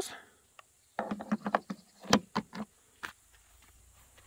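A quick run of light clicks and knocks about a second in, the sharpest about two seconds in and a last one near three seconds. The clicks are from hands working the red plastic housing and spark plug access cover of a petrol inverter generator that is not running.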